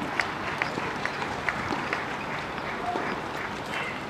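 Outdoor tennis court ambience: a steady murmur of spectators with a scatter of light, irregular clicks and taps.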